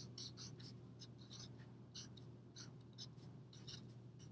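Felt-tip marker writing on paper, a faint run of short, irregular scratchy strokes as the letters are formed.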